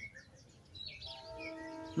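Birds chirping with short high twitters. From about halfway, a steady held tone with several overtones comes in and lasts to the end.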